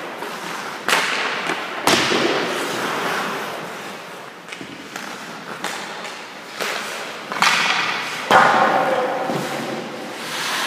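Hockey pucks being shot and struck: about five sharp cracks of stick blades on pucks and pucks hitting the goalie's pads or the boards, two in the first two seconds and three close together later, each echoing in the large rink. Skates scrape on the ice between them.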